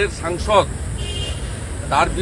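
A man's voice speaking in short phrases, with a pause in the middle, over a steady low rumble of street traffic.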